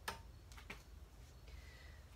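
Two light clicks, the first sharp and the louder, the second about half a second later, over a low steady hum in a quiet room.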